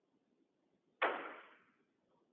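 A single sharp knock about a second in, dying away over about half a second in the room's echo, against faint room tone.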